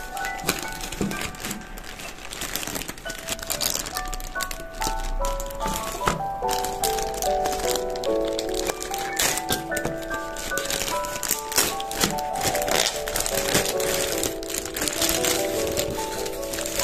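Plastic poly mailer bag crinkling and rustling as it is pulled open by hand, the crackles coming thicker partway through, over light background music with a simple melody.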